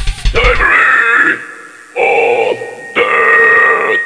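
Metal vocalist shouting into a microphone through the PA in three bursts, about a second, half a second and a second long, after a fast drum fill at the start.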